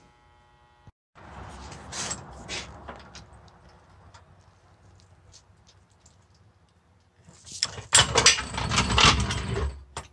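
Metal clattering and rattling of a steel floor jack being worked under a garden tractor on a concrete floor. Scattered clicks come first, then a loud run of clatters from about seven and a half seconds in.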